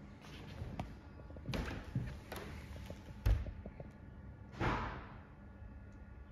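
A few short, dull thumps and knocks, the loudest and deepest about three seconds in, over faint steady room noise.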